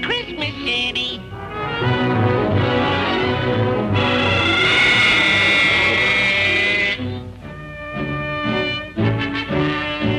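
Orchestral cartoon score: a loud held chord in the middle, then short repeated low notes in a bouncing rhythm.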